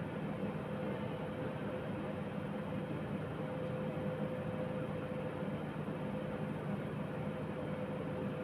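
Steady fan hum and hiss with a constant mid-pitched tone, unchanging throughout.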